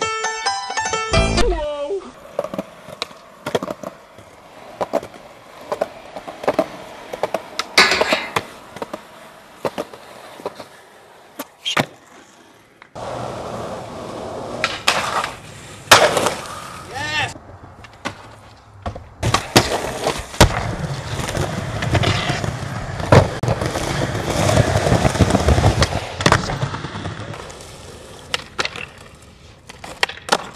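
Skateboard wheels rolling over concrete, broken by repeated sharp clacks of tail pops, board landings and trucks hitting ledges during street tricks.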